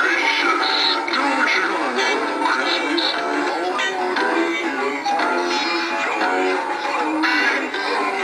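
Several animated singing-and-dancing Santa figures playing their songs through small built-in speakers, with overlapping music and electronic singing. The sound is thin, with no bass.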